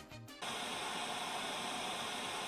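Background music ends about half a second in and is replaced by a steady hiss of white noise, like the static of an untuned television.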